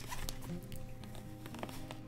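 Soft background music with steady sustained tones. Over it come a few faint rustles and light taps as a plastic pen is slid under an elastic loop in a fabric pencil pouch.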